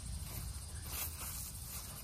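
Lemon cucumber vine leaves rustling as a hand pushes through them, over a low steady rumble.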